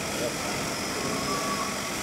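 Meccano differential analyzer running with a steady mechanical hum from its drive and gearing, with faint voices in the room.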